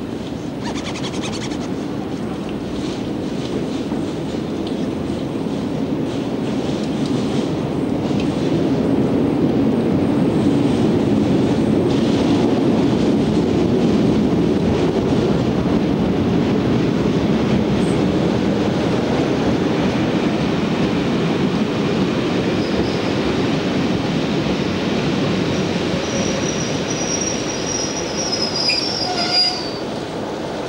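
British Rail Class 47 diesel locomotive's Sulzer twelve-cylinder engine running as it hauls coaches past, growing louder over the first ten seconds and then holding steady. High-pitched wheel squeal comes in over the last few seconds as the coaches roll by.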